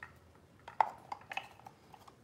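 Painted nesting doll pieces knocking and clicking against each other as the halves are fitted back together, several light separate clicks.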